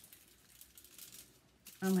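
Faint, scattered crinkling and rustling of aluminium foil and loose sprinkles as a ball of modelling dough coated in sprinkles is handled over a foil-lined tray.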